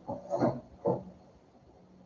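A man's brief non-speech throat sound, twice: a longer one, then a shorter one about half a second later.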